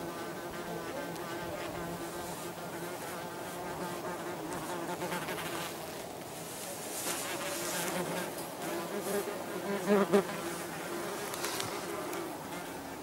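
Yellowjacket wasps buzzing in flight close by, a wavering wing buzz throughout. It grows louder in a couple of close passes near the end.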